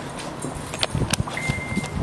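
Walking sounds with a few sharp clicks and light metallic clinks, then a thin, steady electronic beep lasting about half a second near the end.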